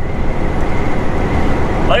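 Steady drone of a Volvo semi-truck's engine and road noise heard inside the cab while driving.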